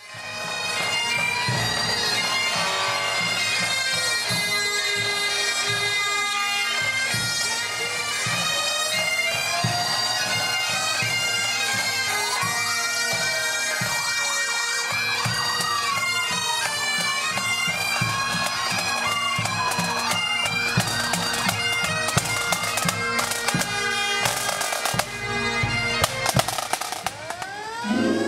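Bagpipes of a marching pipe band playing a tune over their steady drones, with drum beats under them. The drumming grows louder near the end.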